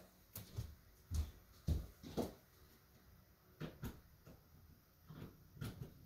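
Footsteps on a hard floor: a few soft thumps about half a second apart, a pause, then a few more.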